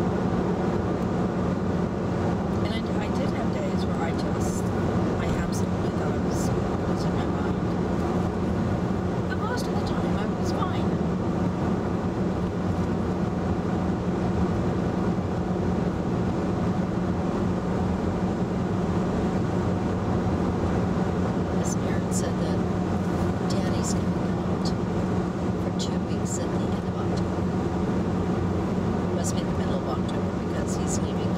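Steady road and tyre noise with engine hum inside the cabin of a 2011 VW Tiguan cruising at highway speed, even in level throughout, with a few faint short clicks.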